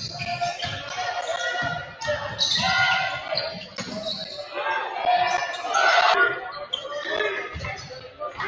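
Basketball dribbled on a gym's hardwood floor, a series of short thumps, under a continuous din of player and crowd voices echoing in the hall.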